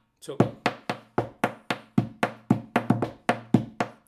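Rapid percussive taps (golpes) on the wooden body of a flamenco guitar, tapping out a bulerías rhythm at about four taps a second, each tap ringing briefly through the guitar body.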